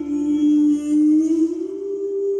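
A male singer holding one long sung note over soft live band accompaniment; the note dips slightly, then rises about one and a half seconds in and holds.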